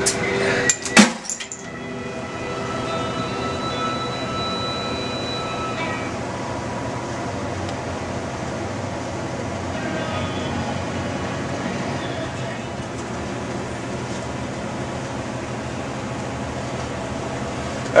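A glass Steam Whistle beer bottle's cap cracked off with pliers: a few sharp clinks and a pop about a second in. A steady background noise follows.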